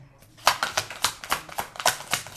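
A deck of tarot cards being shuffled by hand: a rapid, uneven run of sharp clicks, about six a second, starting about half a second in.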